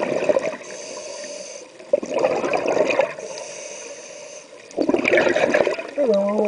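A scuba diver's exhaled bubbles from the regulator, heard underwater: three loud bursts of bubbling about two to two and a half seconds apart. A fainter high hiss fills the gaps between them.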